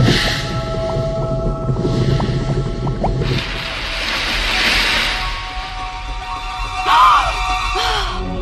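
Dramatic orchestral film score with held tones, swelling into a rushing wash of noise through the middle. A short rising-and-falling note sounds near the end.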